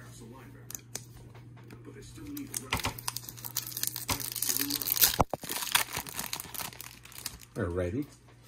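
Baseball trading-card pack's wrapper being torn open and crinkled by hand: a few seconds of crackling and tearing, loudest around the middle, with one sharp snap.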